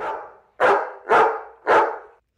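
A dog barking three times in quick succession, about half a second apart, loud.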